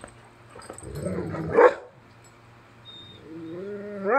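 A large tan dog making 'talking' sounds: a rough, rising grumble that peaks sharply about one and a half seconds in, then near the end a drawn-out pitched moan that starts low and climbs.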